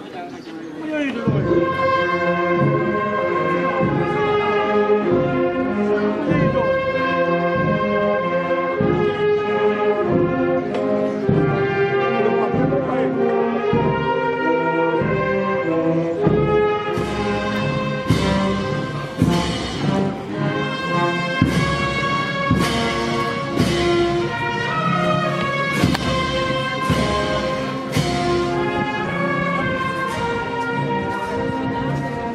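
Brass band playing slow, held chords, with regular beats about once a second in the second half.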